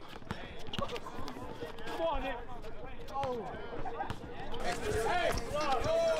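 A basketball bouncing on a court, a few short thuds amid the voices and shouts of players and onlookers.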